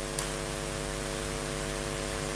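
Steady electrical hiss and mains hum from a live-stream audio feed, a ladder of even hum tones under a broad hiss, with one short click near the start.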